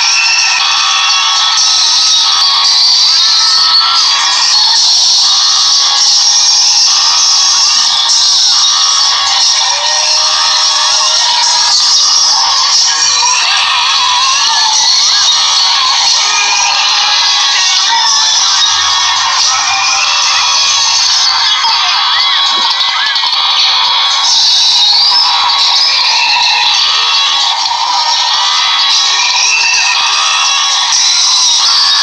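Loud, tinny music with high-pitched, synthetic-sounding cartoon voices running over it, continuous and without any bass.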